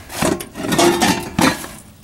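Handling noise as a solar oven's glass door is opened and the lid of an enamelware roasting pan is lifted: about three bursts of rubbing and scraping on metal, glass and wood.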